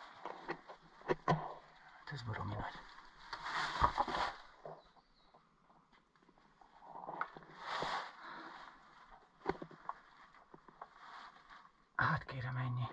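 Someone climbing down a metal ladder into a cave: two stretches of rustling and scraping, and a few short sharp knocks of hands or boots on the rungs.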